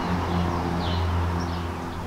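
A passing car's engine, a steady low hum that eases off slightly near the end.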